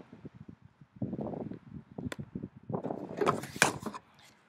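Handling noise as a phone or camera is picked up: knocks, clicks and rubbing right on the microphone, loudest near the end, after a few footsteps on asphalt.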